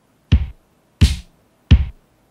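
Simple electronic drum beat of kick and snare alone, playing back from a music session: three sharp hits about 0.7 s apart, the snare alternating with the kick.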